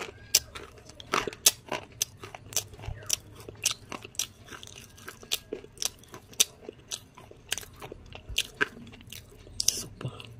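Slate pencil being chewed: a string of sharp crunches at an irregular pace, about two a second.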